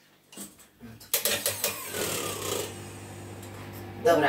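Electric hand mixer switched on about a second in, after a few light knocks, its motor then running steadily as the beaters whisk eggs in a steel bowl.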